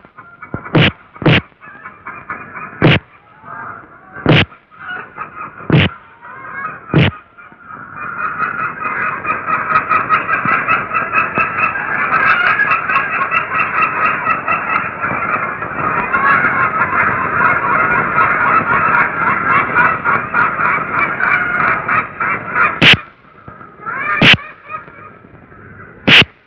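Six sharp whacks of a stick beating a sack in the first seven seconds, then a flock of ducks quacking together in a dense, continuous chorus for about fifteen seconds, and two more whacks near the end.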